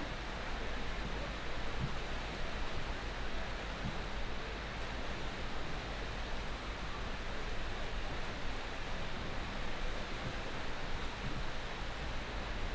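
Steady, even wash of indoor swimming pool noise: the splashing of swimmers doing lengths in several lanes, blended into one continuous sound.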